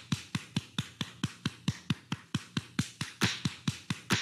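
Rapid, even run of electronic drum hits, about five a second, each hit dropping quickly in pitch like a synth tom or kick: the percussion that opens a funk/hip-hop style music track.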